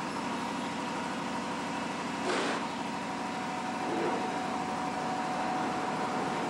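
Mitchum-Schaefer diamond-weave wire-mesh weaving loom running with a steady machine hum and a fine, rapid pulsing, with a short scraping rush about two seconds in.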